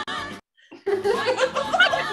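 Music playing from a computer cuts out abruptly less than half a second in, leaving a brief silent dropout, a playback glitch. About a second in, a woman laughs loudly.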